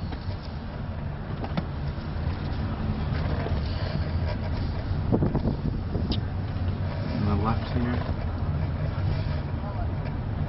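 Steady low engine and road noise heard inside a car's cabin as the car drives slowly and turns through a residential street.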